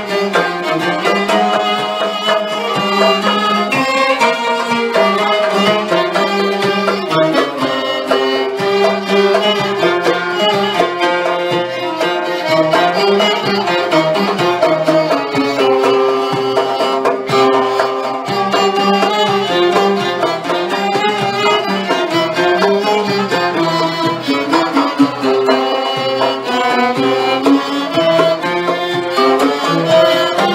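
Arabic orchestra of violins and ouds playing a sama'i in maqam Hijaz Kar Kurd, the bowed violins carrying a continuous melody over the plucked ouds at a steady, full level.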